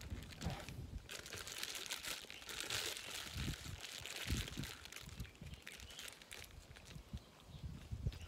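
A rice ball's wrapper crinkling as it is held and handled, busiest in the first half, with a few low bumps of handling.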